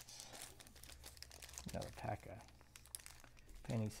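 Irregular crinkling and rustling of trading-card pack wrappers as they are handled and opened.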